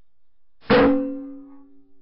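A single shot from an AGT Vulcan 3 .22 PCP air rifle: one sharp report about two-thirds of a second in, followed by a ringing tone that dies away over about a second.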